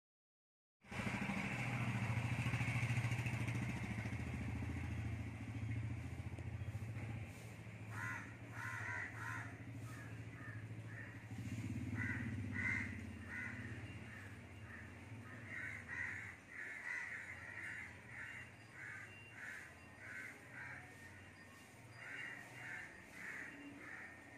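A low steady hum, loudest near the start, fades away over the first half. From about eight seconds in, crows caw over and over in short calls.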